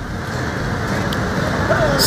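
Steady noise of busy street traffic: auto-rickshaws, scooters and cars running in the road.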